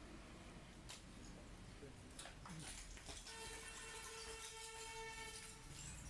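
A few faint snips of hair-cutting scissors about one and two seconds in, then a steady horn-like tone held for about two and a half seconds from about halfway.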